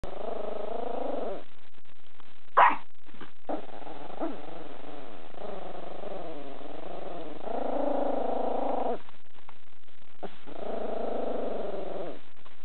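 A pet growling menacingly at her own reflection: several long, wavering growls with short pauses between them. A sharp knock cuts in about two and a half seconds in, louder than the growls.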